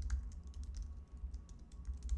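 Typing on a computer keyboard: a run of irregular key clicks over a steady low hum.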